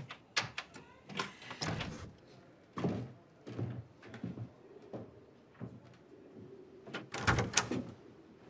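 A wooden door being opened, then steady walking footsteps in boots, and a louder clatter of a door opening near the end.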